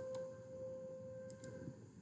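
A steady faint hum at one pitch over low background hiss, with a few faint computer-mouse clicks as a link is copied and a new browser tab is opened.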